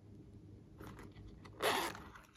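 Hands handling a yellow silicone pop-it case: faint rustles, then a short rasping scrape near the end, like a zipper being pulled.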